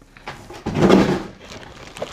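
A woman's short strained grunt about a second in, as she heaves a heavy molded-pulp packing insert out of a cardboard box, with rustling of the packaging around it.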